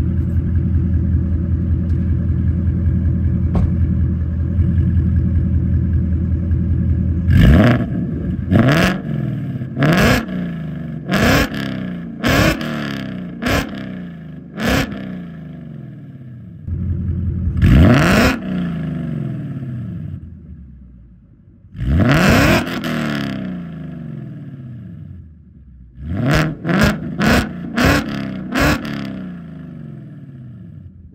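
2023 Ford Mustang Mach 1's 5.0 V8, through a full X-Force exhaust with mid-length headers, X-pipe, high-flow cats and active valves open, idling and then revved. About seven seconds in come seven short throttle blips about a second apart, then two longer revs, then a quick run of about six blips near the end, the engine settling back to idle between them.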